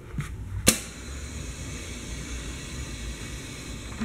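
Gummy-candy starch-moulding press: a sharp click about half a second in as the foot pedal is pressed, then a steady low hiss and hum as the plate of strawberry-shaped moulds descends and presses into the starch tray.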